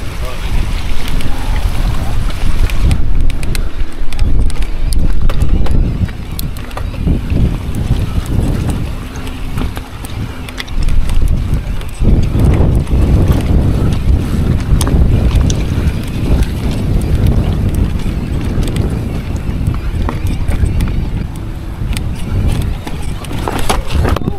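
An electric mountain bike ridden up a rough, rocky technical climb: a loud low rumble of wind buffeting the microphone, with frequent knocks and rattles from the bike over the rocks.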